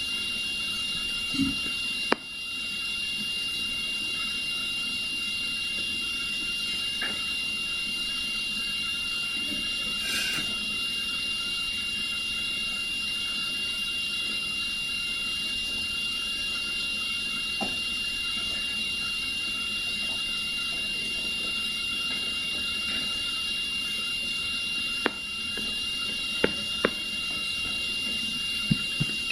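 Steady hiss with a constant high-pitched tone running through it, broken by a few faint clicks.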